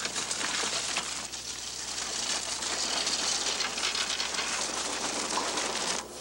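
Bicycles rattling and crunching over a rough dirt track: a dense, steady crackling clatter.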